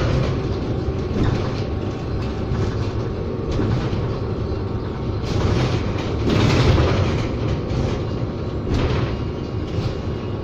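Cabin ride noise of a Proterra BE40 battery-electric transit bus under way: steady road and tyre rumble with interior rattles, swelling into louder jolts a little past the middle and again near the end.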